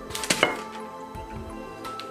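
Glass bowl knocking against the table two or three times in quick sequence, about a third to half a second in, as it is turned over to drop out a microwave-baked cake, with soft background music underneath.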